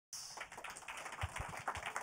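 Scattered clapping from a small audience: separate, irregular claps rather than a dense roll of applause.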